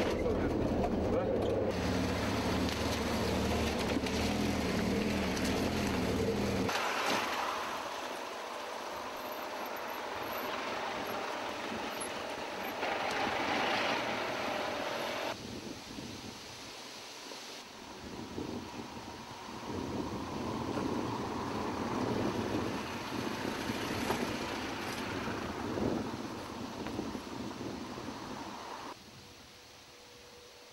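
Road vehicle noise: an engine running with a low hum for the first seven seconds or so, then broader traffic and tyre noise that shifts abruptly several times.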